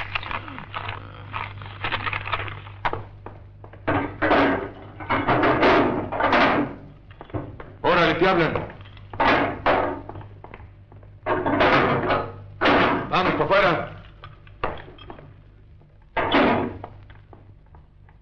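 Voices speaking in short bursts with gaps between them, words unclear, over a steady low hum.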